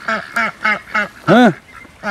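Domestic ducks (white Pekins and a mallard hen) quacking: a quick run of about five short quacks, then one longer, louder quack about a second and a half in.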